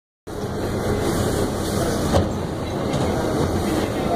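Steady rumble and hum inside an R68 subway car standing at a station platform, with a single sharp click about two seconds in.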